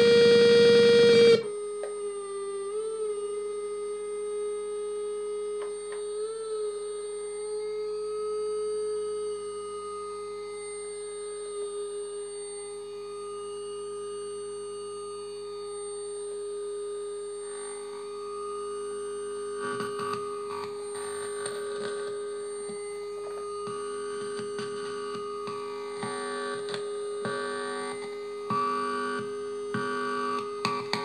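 DIY "MAU" Belgian Triple Project synthesizer played live. A loud buzzy tone cuts off suddenly about a second in, leaving a quieter steady drone with small pitch wobbles. About two-thirds of the way through, choppy, stuttering pulses join in over the drone.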